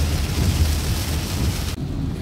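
Heavy rain hitting a car's windshield and body while driving, over the low rumble of the car on a wet road. The rain noise cuts off suddenly near the end, leaving only the car's low running rumble.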